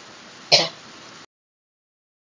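A man briefly clears his throat about half a second in, over faint microphone hiss; then the sound cuts off abruptly into dead silence as the screen recording is stopped.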